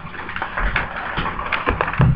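Paper sheets rustling and crackling as they are handled and turned, with a few dull knocks against the desk.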